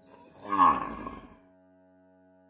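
A cow mooing: one call about a second long that falls in pitch, loudest at its start.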